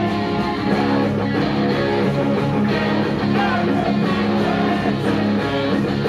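Pop-punk band playing live, with electric guitars and drums, loud and steady.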